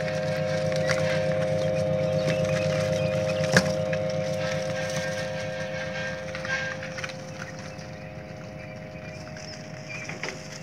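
Steady electric hum of a small box fan in a chick brooder, with faint chirps from quail chicks and a single knock about three and a half seconds in. The hum fades a little in the second half.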